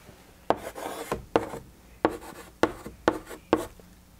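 Chalk writing on a blackboard: an irregular run of about ten short scratching strokes and taps as a word is written and underlined.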